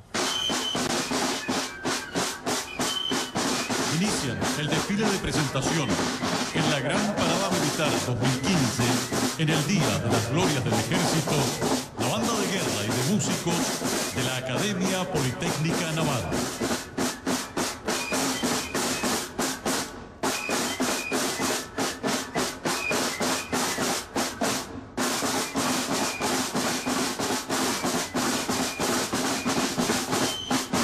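Military marching band's massed snare drums beating a fast, dense cadence with bass drum, with a low tune moving underneath for roughly the first half.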